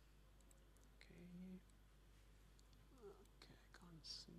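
Near silence: a faint, muttered voice away from the microphone about a second in and again near the end, with a few faint clicks.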